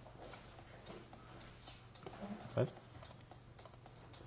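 Faint, scattered clicks and taps of a computer keyboard and mouse over a low steady hum, with one short spoken word about two and a half seconds in.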